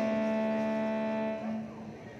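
A live band holding a sustained final chord, with electric guitar through effects, which ends about a second and a half in and leaves quieter hall noise.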